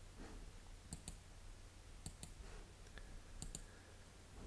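Faint computer mouse clicks: three quick pairs of clicks about a second apart.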